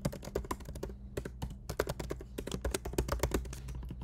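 Typing on a computer keyboard: a rapid, uneven run of key clicks as a line of code is entered.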